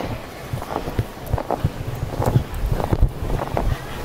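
Wind rumble on a handheld camera's microphone, with irregular short thuds from hurried footsteps.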